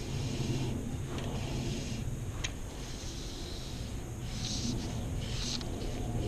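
Steady wind rumble on the microphone, with a few soft swishes of fly line through the air as the fly rod is cast, most of them in the second half.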